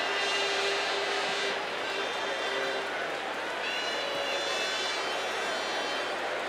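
Crowd noise in a large arena, a steady din of many voices, with thin steady high-pitched tones over it and a brief rising-then-falling whistle-like tone about four seconds in.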